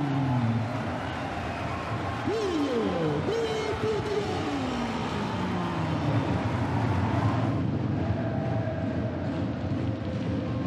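Crowd noise in an indoor roller hockey arena after a home goal, with loud tones over it that slide down and swoop in pitch during the first half. The sound changes abruptly about two-thirds of the way in.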